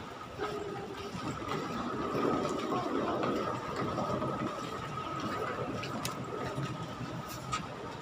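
Busy airport terminal ambience while walking: a wheeled suitcase rolling over a tiled floor, footsteps and background crowd chatter, with a steady high hum and a few sharp clicks.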